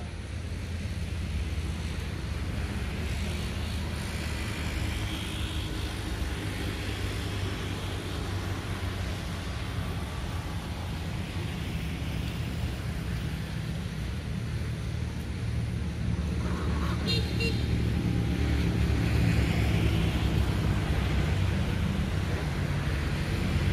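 Steady low rumble of road traffic, growing a little louder in the second half, with a brief high-pitched sound about seventeen seconds in.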